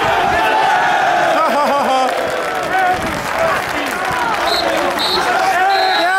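Football crowd on the stadium terraces: many voices calling and shouting over one another, with no single voice standing out.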